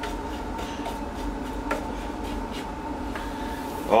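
Strokes of a Wooster paintbrush laying wet enamel along the edges of a cabinet door: a faint rubbing of bristles over the wood, heard over a steady hum.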